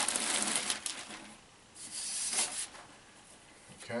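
Clear plastic bag crinkling as a video processor unit is slid out of it: about a second of rustling, a pause, then a second stretch around two seconds in.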